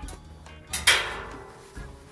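A single sharp knock with a short ringing tail about a second in, over quiet background music.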